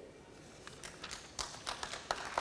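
A run of faint, sharp, irregular clicks or taps. They start under a second in and come more often toward the end.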